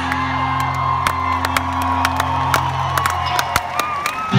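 Live rock band in an arena holding a sustained low electric-guitar chord, with scattered sharp clicks and crowd whoops over it. The held chord cuts off shortly before the end.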